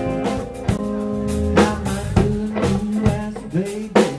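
A rock trio playing: electric guitar, bass guitar and drum kit, with steady drum hits and a guitar line that bends in pitch near the end.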